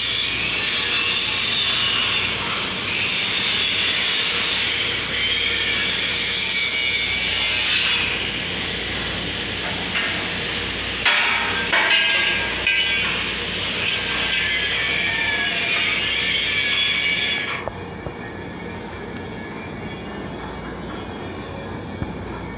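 Angle grinders grinding steel, a continuous harsh, rasping screech with a few sharp knocks partway through. The grinding drops off sharply about three-quarters of the way through.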